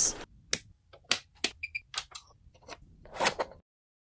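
Intro-sting sound effect: irregular sharp clicks like typing on a keyboard, with two short high beeps about a second and a half in.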